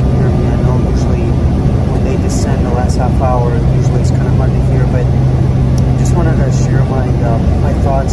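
Steady drone of a jet airliner cabin, with a constant low hum beneath the rushing noise.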